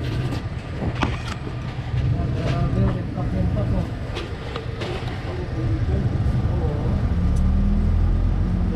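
Street traffic: motor vehicle engines running as a low rumble that grows louder near the end, with people talking in the background and a few light clicks.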